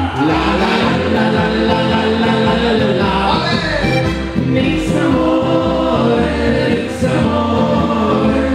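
Live band music: a Steirische harmonika (diatonic button accordion) and an upright double bass playing a lively tune, with several voices singing together over it.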